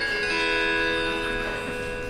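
Acoustic-guitar chord from the Six Strings guitar app on an iPad, strummed and left ringing through the tablet's speaker. A further note joins just after the start, and the chord slowly fades.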